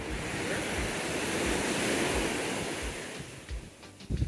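Gentle ocean surf: a small wave washes up the sand, swelling to its loudest about halfway through and then fading as it draws back.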